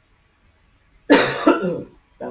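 A woman coughing twice in quick succession, about a second in.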